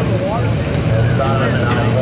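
Pickup truck engine running steadily at low revs as the truck drives off the pulling sled after its pull, with a person's voice over it.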